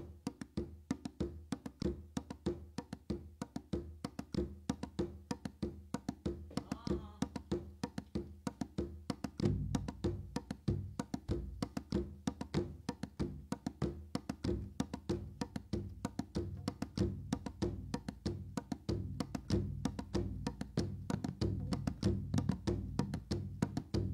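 A quick, steady clicking percussion rhythm like a wood block, playing on as a loop. About ten seconds in, a large hand-held frame drum joins with low beats struck by hand.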